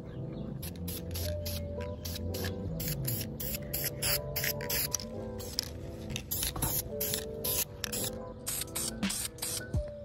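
An aerosol can of engine-enamel primer spraying in many short hissing bursts as a part is primed, over background music with a steady melody.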